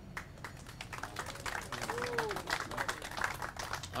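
A small group applauding, a steady patter of hand claps.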